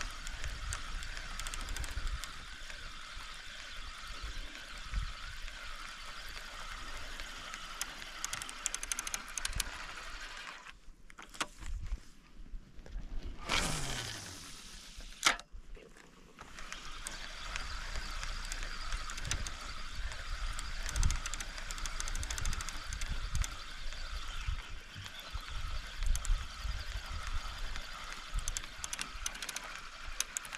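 A fishing reel's spool whirring out on a cast, its pitch falling steeply as it slows, followed by a sharp click. Before and after it, a steady high drone that swells and fades, with low wind rumble on the microphone.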